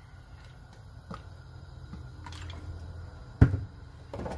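Cooking oil being poured from a plastic bottle into an aluminium pan: a quiet low pouring sound with a few light clicks. A single sharp knock comes near the end.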